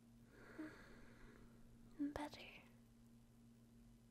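Soft, breathy whisper-like sound, then a short sharp click about two seconds in followed by a brief hiss of breath, all faint over a low steady hum.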